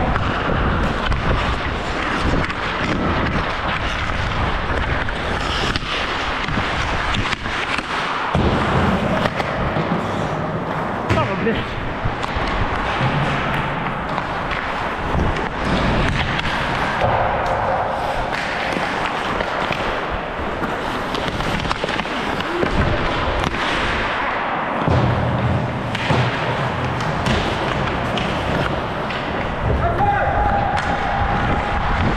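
Ice hockey play heard from a helmet-mounted camera: a constant rush of skate blades scraping and carving the ice and air rushing past the microphone, with occasional knocks of sticks and puck.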